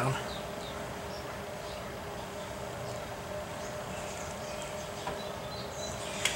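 Quiet background: a steady low hum with a few faint high chirps, and a light click about five seconds in.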